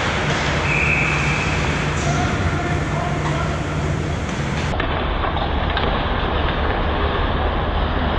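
Ice hockey rink sound: a steady hum and rumble with skating noise and distant players' voices. About five seconds in the sound cuts abruptly and turns duller.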